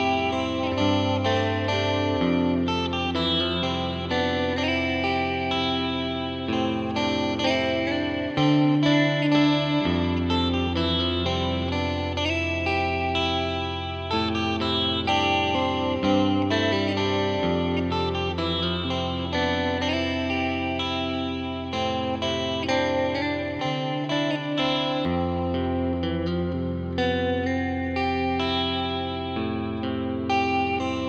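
Drumless midwest emo instrumental at 126 BPM: clean electric guitar picking quick runs of notes over sustained low bass notes that change every couple of seconds.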